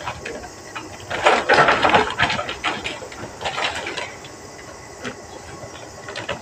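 Sawdust-based cow-manure compost pouring from a bagging hopper into a plastic sack: a rushing, crackling pour about a second in, then lighter rustling and trickling until about four seconds in. A faint steady hum runs underneath.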